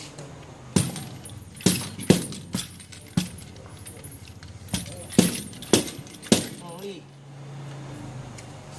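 Small wooden hand palanquin, held by two men, knocking sharply on the table about nine times at irregular intervals as it taps out characters in spirit-writing divination.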